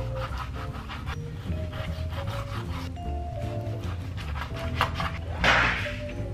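A kitchen knife sawing and scraping through raw oxtail meat and fat onto a plastic cutting board, in short repeated strokes, over background music with a steady beat. Near the end comes one louder, longer scrape lasting about half a second.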